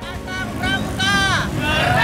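A group of young people's voices shouting together in chorus, with a long shout that falls in pitch about a second in. Motorbike traffic runs underneath.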